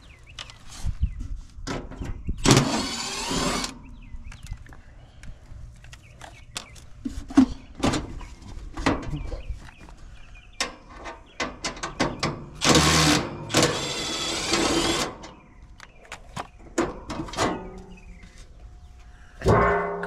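Cordless Milwaukee M12 impact driver running in three bursts of about a second each, backing out the screws of an air-conditioner condenser's service panel. Short clicks and knocks of the screws and sheet-metal panel being handled come between the bursts.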